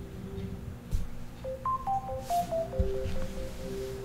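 A short electronic melody of single beeping tones: a high note falling step by step to a lower one that repeats several times, over a lower held tone. A few soft knocks are heard alongside it.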